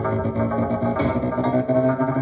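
Trap beat with a plucked, rabab-style string melody over bass, played on a Roland Juno-DS88 synthesizer keyboard, with a bright hit about a second in.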